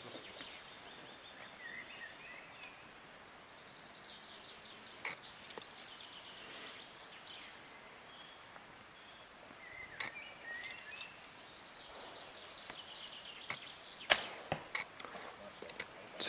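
Arrow shot from a Korean traditional bow: a sharp snap of the string near the end, the loudest sound, followed within about a second by a few quieter knocks as the arrow strikes the 3D target. A fainter click comes about ten seconds in, over faint outdoor background.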